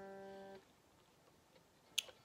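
The open G string of an electric guitar rings as a steady note and is damped about half a second in. After a quiet stretch there is a short click near the end.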